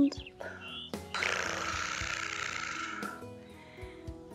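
One long breathy exhale lasting about two seconds, starting about a second in, over soft background music.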